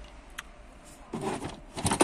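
Handling noise from parts and the plastic housing: a light click, then two short bursts of rustling and scraping, the second one louder, near the end.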